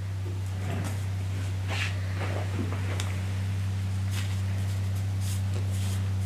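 A steady low hum, with faint scattered rustles and a small click about three seconds in, as a strip of one-inch Tensoplast elastic adhesive tape is handled and laid along the side of a foot.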